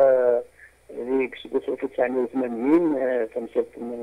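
Speech only: a voice talking in a radio broadcast, with a short pause about half a second in.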